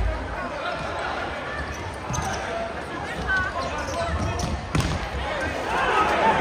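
Futsal ball kicked and passed on a sports-hall court, with a few sharp knocks of foot on ball. Players and spectators shout and talk in the hall.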